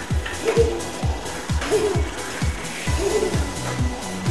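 Electronic background music with a deep bass drum that drops in pitch on each hit, about two hits a second, and a short phrase repeating over it.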